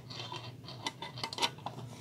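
Light metallic scraping and small clicks of thin aluminium mess-kit pans as the plate's wire loop is worked onto the skillet's hinge hook, with a few sharper clicks in the second half.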